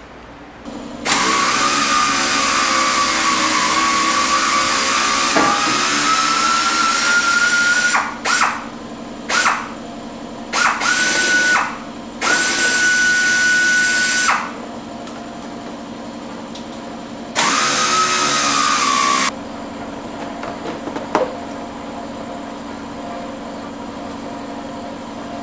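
Pneumatic hand tool on an air hose, loosening the Tahoe's fan shroud fasteners. It runs with a hissing whine: first for about seven seconds with the whine rising slightly in pitch, then in a string of short bursts and a two-second run, and once more for about two seconds later on.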